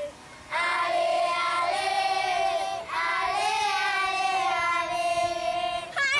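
A group of children singing together in long held notes, breaking off briefly just after the start and again about three seconds in.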